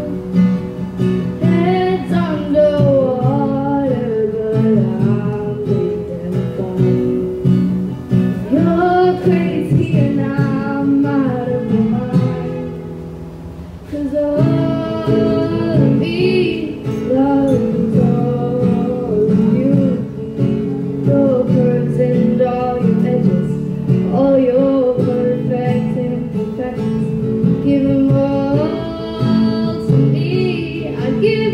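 Acoustic guitar strummed, with a woman singing over it in a live performance. About twelve seconds in, the music drops briefly quieter before picking up again.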